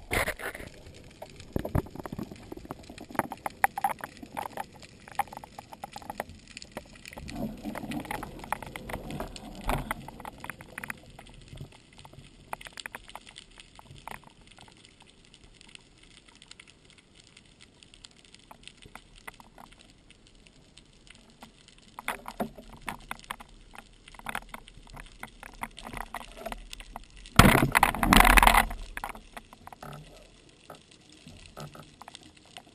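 Underwater sound picked up by a speargun-mounted camera while freediving: a low water hiss with scattered clicks and crackles. A loud rushing burst of about a second comes near the end.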